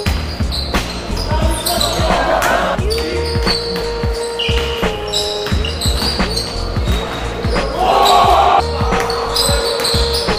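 A basketball bouncing repeatedly on a wooden gym floor during play, the thuds echoing in a large hall, with players' voices calling out.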